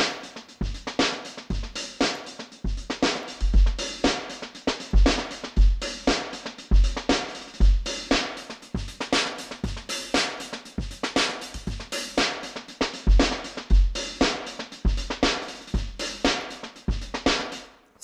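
An Addictive Drums kit loop with kick, snare and hi-hats plays at about 118 beats per minute through a multiband compressor. Its gain reduction is being skewed between the low and high frequency bands.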